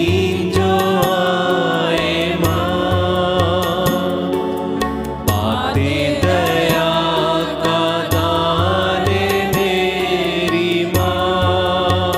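Women's choir singing a devotional worship song together over a steady beat and bass accompaniment.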